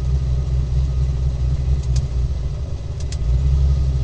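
Turbocharged car engine idling at just under 1,000 rpm: a steady low rumble. A few light clicks come in the second half.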